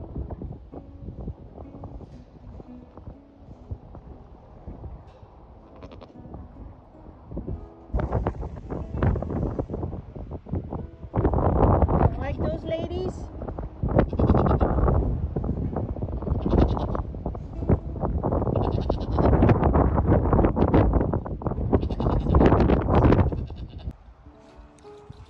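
Sheep bleating, several calls one after another. They start about a third of the way in and grow louder and more frequent in the second half.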